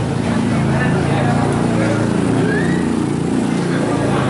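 People talking close by, over a low, steady hum.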